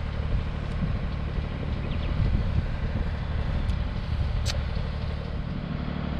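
Steady low outdoor rumble with a faint hiss above it, and two faint ticks, one about a second in and one near the end.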